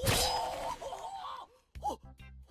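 An anime sound effect of a knife stabbing, with a sudden impact at the start, followed by a character's wavering scream that fades out within about a second and a half.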